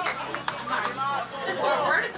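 Several people's voices talking and calling out at once, overlapping chatter without clear words.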